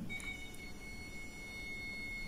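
Digital multimeter's continuity buzzer giving one steady high beep as the probes touch a ceramic capacitor in the CPU circuit that reads near zero ohms: the sign of a short circuit in the CPU circuit.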